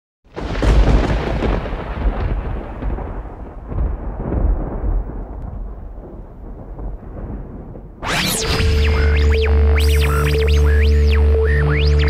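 Intro sound effect: a thunder-like boom rumbles in and fades unevenly over about eight seconds. Then music begins, with a held deep bass and pitched lines that sweep up and down.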